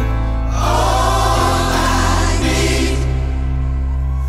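Gospel-style choir of many voices singing a held chorus phrase over steady bass and keyboard chords, the chord changing twice midway.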